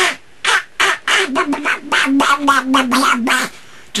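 A man making Donald Duck-style voice noises, squeezing air from a pocket between his tongue and left cheek (buccal speech). It comes as a run of short raspy bursts, then a longer buzzy stretch with a wavering pitch in the second half.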